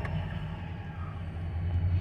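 Low, steady engine rumble that grows a little louder near the end, heard from inside a vehicle.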